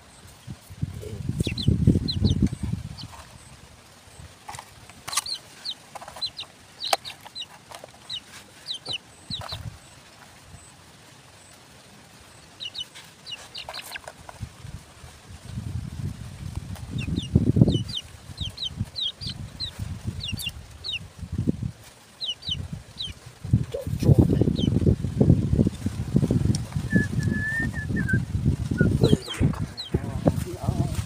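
Birds chirping in quick runs of short, high notes, with one brief whistled note near the end. Low rumbling bumps come and go as the wire trap is handled on the soil.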